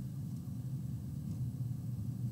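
A steady low hum with faint hiss and no other clear event: room tone picked up by the recording microphone.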